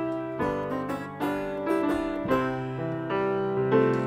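Instrumental opening of a song: grand piano chords with plucked strings from a folk band (banjo, acoustic guitar, upright bass), the chords changing about once a second.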